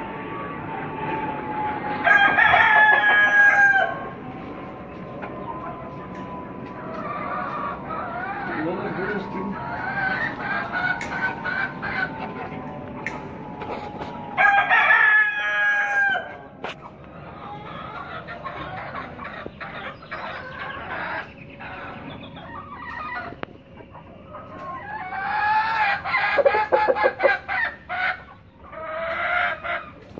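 Roosters crowing, two long loud crows about two seconds in and again near the middle, with hens clucking and calling in between and a louder burst of calls near the end.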